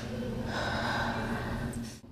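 A woman's long, breathy gasp lasting about a second and a half, right after snorting a line of powder.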